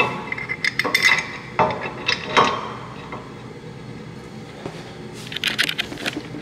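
Metal clinks and knocks as a Porsche brake caliper is handled and set against a steel adapter bracket on the hub: a few ringing knocks in the first couple of seconds, a quieter stretch, then a quick run of small clicks near the end.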